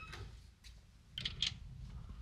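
A few faint clicks of a door's lever handle and latch being worked, a little over a second in.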